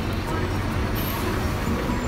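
Busy city street: a steady low rumble of traffic and buses, with people talking.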